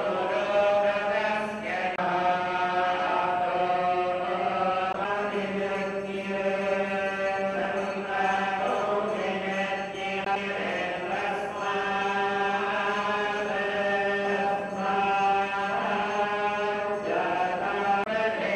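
Vedic mantras chanted in unison by a group of temple priests. The held notes shift in pitch every second or two over a steady low hum, without pause.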